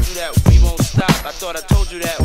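Hip hop track with a rapped vocal over a beat with a heavy bass drum.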